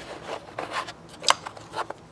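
Styrene plastic compartment cover being lifted off a model's plastic hull, rubbing and scraping against it, with a few light clicks near the middle.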